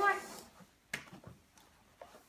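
The end of a spoken word, then a single short click about a second in, followed by faint handling noise.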